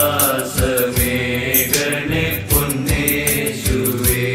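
A Malayalam Christian devotional song: a sung, chant-like voice over instrumental accompaniment with a steady beat of about two strikes a second.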